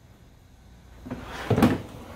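Hard plastic tool cases being shuffled and set down on a tabletop, with a couple of sharp knocks about a second and a half in.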